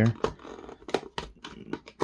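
Pocket knife blade set against the edge of a plastic blister pack on a cardboard card, giving a string of sharp, irregular plastic clicks and crinkles as the blade is worked under the blister's edge.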